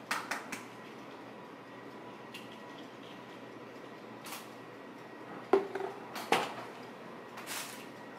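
Kitchen clatter of cookware and utensils at the stove and counter: a few quick clicks at the start, scattered light knocks, and two louder knocks of utensils or dishes about two thirds of the way through.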